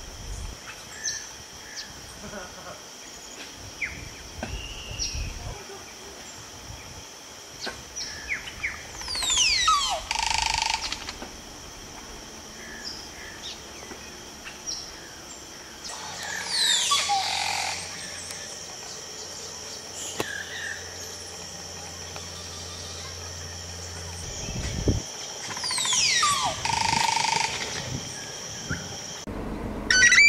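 Crested oropendolas singing at their nesting colony: three loud songs about eight seconds apart, each a fast gurgling call sweeping down in pitch and ending in a short rushing burst. A steady high insect drone and scattered small chirps run underneath.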